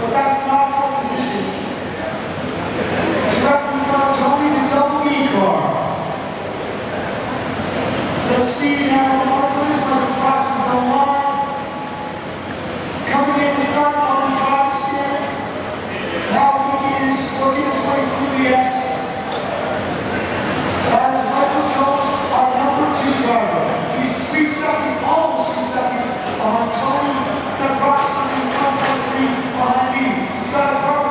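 A pack of 1/10 scale electric RC race cars running on a carpet track. Their electric motors and gear drives whine in surges that swell and fade every second or two as the cars accelerate and lift around the corners.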